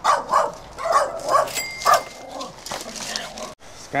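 A small dog barking repeatedly: several quick yappy barks over the first two seconds, then quieter. A short high beep sounds about a second and a half in.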